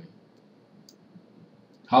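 Near-silent room tone with a faint click about a second in: a computer mouse clicking while cells are drag-selected. A short spoken word comes in right at the end.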